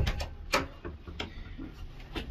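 An interior panel door being opened: a sharp latch click right at the start, then a few lighter clicks and knocks over the next second as the door swings open.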